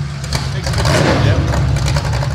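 A car engine running, with a steady low drone that grows louder about a second in, over background voices.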